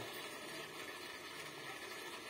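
Faint, steady background hiss with a low hum underneath; no distinct sound stands out.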